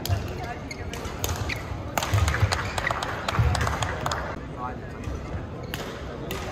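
Badminton rally in a large hall: several sharp racket strikes on the shuttlecock and heavy thuds of players' feet on the court, over a background murmur of voices.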